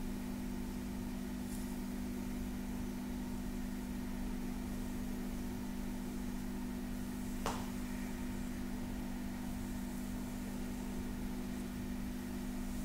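Fingertips and nails rubbing and stroking bare skin, faint under a steady low hum, with a single sharp click a little past halfway.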